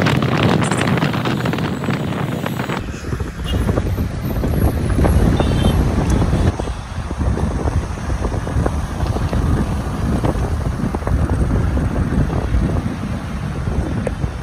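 Wind buffeting a microphone held out the window of a moving car, over a steady rush of road and traffic noise.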